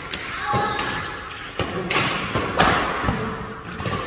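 Badminton rally: sharp racket strikes on the shuttlecock, a few each second or so, with players' footfalls and a short shoe squeak on the court mat.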